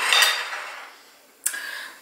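A ceramic plate set down on a tiled countertop, a clatter that rings and fades over about a second. A short click follows near the end.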